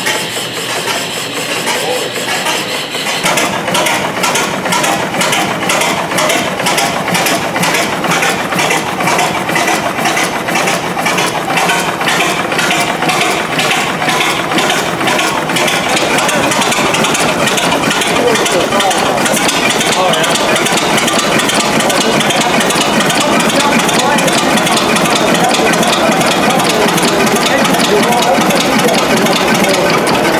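Vintage multi-cylinder stationary gas engine with large flywheels being started: after a few seconds it catches and runs with an even, rapid beat of firing strokes.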